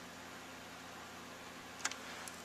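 Quiet steady background hiss with a faint low hum, and one brief click near the end.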